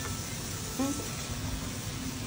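Quiet room tone with a low steady hum, and a brief murmur from a woman's voice just under a second in.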